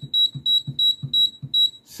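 NuWave air fryer's control panel beeping rapidly, about four short high beeps a second, as its cook timer is stepped up to seven minutes. The beeps stop shortly before the end.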